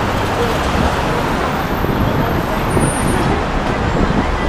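Steady city traffic noise from a busy road, a dense even rumble with faint voices of passing pedestrians mixed in.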